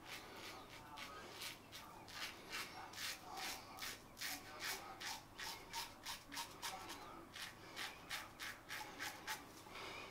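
Fatip Piccolo double-edge safety razor, fitted with its solid-bar Genteel base plate, scraping through stubble and lather in a rapid series of short strokes, about three a second.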